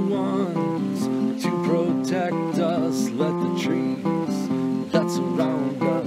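Acoustic guitar strummed in a steady rhythm, chords ringing and changing every second or so.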